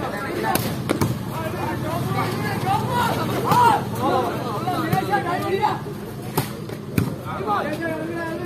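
Volleyball being struck during a rally: sharp hits about half a second in and a moment later, then three more in the second half, the last two about half a second apart, over steady crowd voices.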